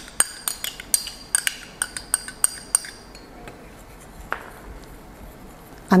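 A metal spoon clinking and scraping against a small glass measuring cup as thick sweetened condensed milk is scraped out: a quick run of light, ringing clinks, about three or four a second, for the first three seconds, then only an odd soft tap.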